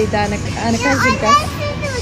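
A young child's high-pitched voice talking and calling out over a steady low background hum.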